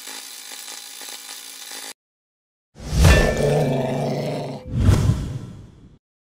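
Logo sound effect: about two seconds of a steady rushing sound, then a short gap, then a loud, low growling roar and a second, shorter growl near the end that fades out.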